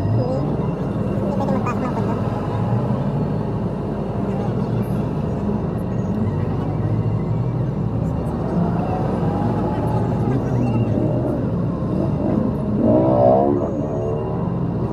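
Street noise of heavy, slow city traffic: vehicle engines running, with voices mixed in. A brief, louder pitched sound comes near the end.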